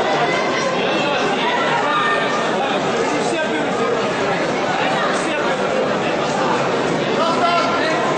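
Many people talking at once in a large hall: indistinct crowd chatter with no single clear voice.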